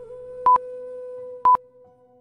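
Quiz countdown timer beeping once a second, two short high beeps, over soft background music that fades out near the end.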